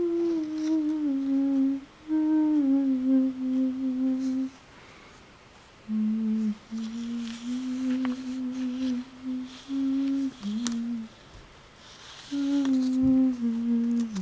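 A person humming a slow, wordless tune in long held notes that glide and step downward, in several phrases with pauses of a second or two between.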